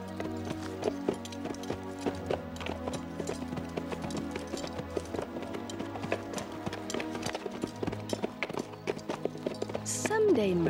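Horses' hooves clip-clopping over background music with long held notes.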